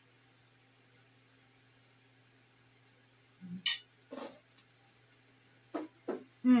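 Sounds of someone eating, over a quiet room with a steady low hum: about halfway through, a short low "mm" and two quick sharp sounds, then another brief sound near the end.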